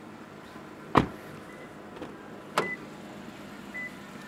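Two sharp knocks, about a second in and again past the middle, with a softer click between them, over a faint steady background: a car's doors being handled.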